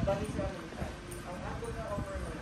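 Footsteps on a hard tiled floor as someone walks along, with people talking quietly in the background.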